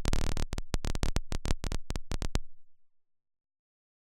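Gated layers of processed dither noise playing back: a rapid, uneven stutter of hissy noise bursts with a low thump under them, about seven a second, starting suddenly and trailing off about three seconds in.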